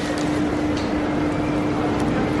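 Steady railway-platform background noise: a low rumble with a constant machine hum running through it.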